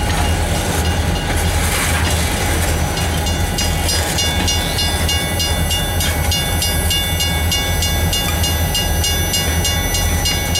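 Freight train boxcars rolling past with a steady low rumble and wheel clatter. From about three seconds in, a level-crossing bell rings rapidly over it.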